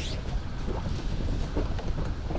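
Wind rumbling on the microphone, with a few faint knocks.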